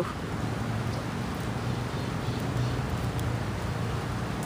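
Steady rain falling, an even hiss with a low rumble beneath it.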